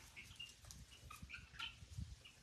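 Near silence with faint, short bird chirps scattered through it.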